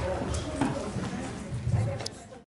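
Indistinct voices in a large room with a few scattered light knocks and clicks.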